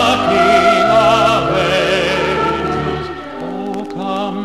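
A choir with orchestra performing a Christmas song, voices holding long notes with vibrato over sustained bass. The phrase ends about three seconds in and a new one begins.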